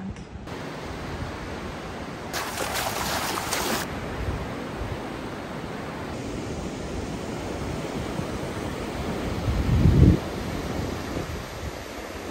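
Sea surf breaking and washing onto a sandy beach, a steady rushing noise with a brighter hiss from about two to four seconds in. Wind buffets the microphone, with a loud low gust about ten seconds in.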